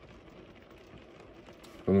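Faint room tone inside a car with no distinct sound, then a man starts speaking near the end.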